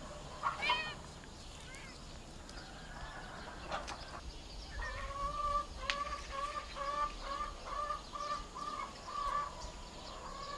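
A bird calling: a short call near the start, then from about five seconds in a run of short, evenly repeated notes, about two a second.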